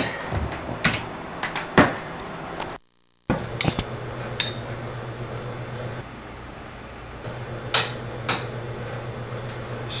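Small-room noise with a low steady hum and a few scattered sharp knocks and clicks. The sound cuts out completely for about half a second near three seconds in.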